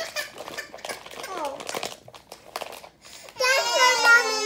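Children's voices with the crinkle of a foil snack bag being handled; about three and a half seconds in a child lets out a loud, long, high-pitched vocal sound.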